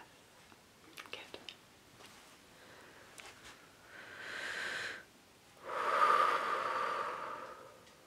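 A slow, deep breath close to the microphone: a first long breath sound of about a second, then a louder, longer rush of breath of about two seconds.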